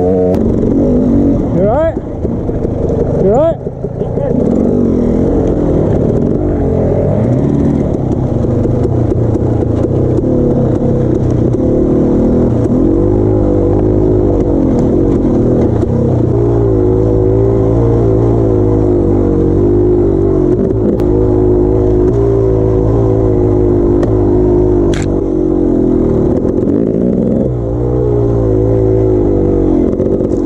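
Trail dirt bike engine running under load, its revs rising and falling as the rider works the throttle along the trail, with two sharp climbs in revs about two and three and a half seconds in.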